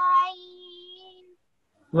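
A student's voice chanting the close of a Quranic verse in tajweed recitation, holding one steady, drawn-out note for about a second before trailing off into silence.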